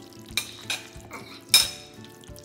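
Red rubber spatula stirring chopped egg salad in a stainless steel mixing bowl, scraping against the metal three times, the loudest scrape about one and a half seconds in.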